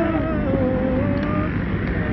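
A voice singing a long, held note that slides slowly down in pitch and then levels off, over a constant heavy low rumble.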